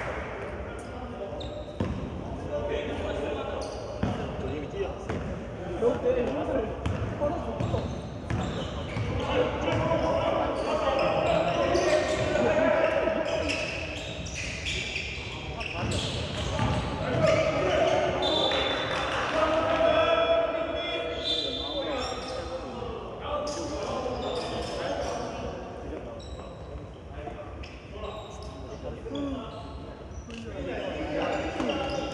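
Basketball bouncing on a hardwood gym floor during play, with players' voices calling out, all echoing in a large indoor gymnasium.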